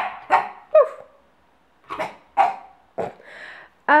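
A puppy barking: about six short barks in three bunches, with pauses between them.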